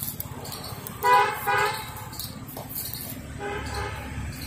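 A vehicle horn honking in street traffic: two quick toots about a second in, then a longer, fainter toot near the end, over a low traffic hum.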